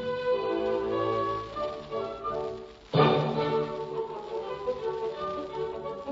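Orchestral music on a 1940s radio broadcast recording: held chords that fade nearly away, then the orchestra comes back in suddenly and loudly about three seconds in and plays on.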